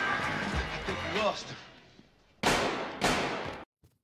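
Movie soundtrack music and a voice fading out, then two loud gunshots about half a second apart, each ringing briefly before cutting off.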